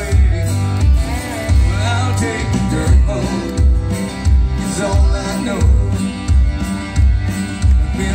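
Live country band music: electric and acoustic guitars over a steady bass and drum beat, about three beats every two seconds.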